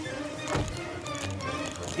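Background music with a steady beat, and a single dull thump about half a second in.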